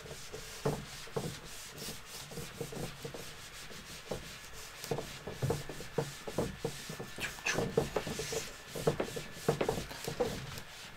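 A whiteboard being wiped clean with a cloth, in quick, irregular rubbing strokes across the board's surface.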